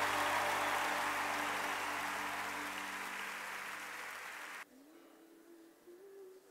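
Music ending: a strummed guitar chord rings out and fades, then cuts off abruptly about four and a half seconds in. A faint held note follows.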